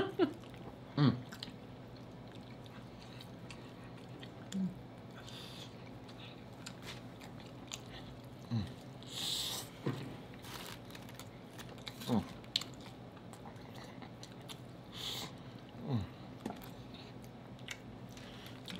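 Close-miked eating sounds of baked chicken and corn on the cob being chewed and bitten: scattered wet mouth clicks and smacks with a few short breaths. Four brief falling hums come at intervals, and a laugh comes at the very start.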